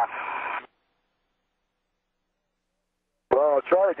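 Hiss of an open radio channel that cuts off suddenly within the first second, then complete silence, then a man's voice over the radio starting near the end.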